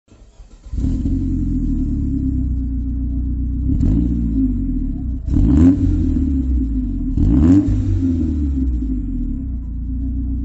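Engine of a 1999 Saab 9-3 2.0 turbo (LPT), a turbocharged four-cylinder with a Stage 1 remap, comes in about a second in and runs steadily. It is revved three times, each rev climbing and dropping back.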